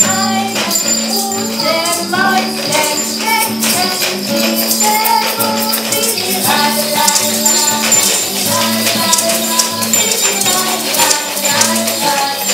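Two women singing a German children's song about acorns, accompanied by a strummed nylon-string classical guitar, with small hand shakers rattling along.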